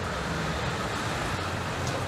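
Road traffic passing on a rain-wet street: a steady hiss of tyres on wet pavement over a low engine rumble.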